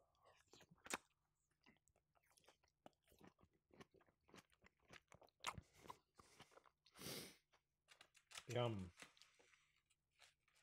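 Faint, close-miked chewing of a mouthful with a big slice of tomato: wet mouth sounds and many small clicks. A short rush of noise comes about seven seconds in, and a spoken "yum" follows near the end.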